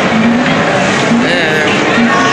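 Loud arcade din: the electronic sounds and music of many game machines mixed together, with a short low electronic tone repeating every half second or so and wavering higher tones about a second in.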